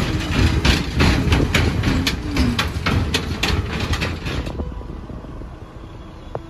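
A vehicle crossing a bridge: a low rumble with a rapid, irregular clatter from the deck, dying away after about four and a half seconds.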